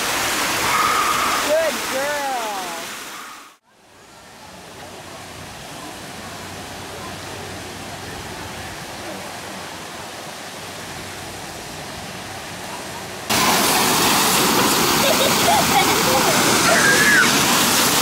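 Fountain water splashing and falling into a shallow pool, with children's voices over it. After a cut it drops to a quieter steady hiss, then about thirteen seconds in jumps abruptly to the loud, steady spray of fountain water jets.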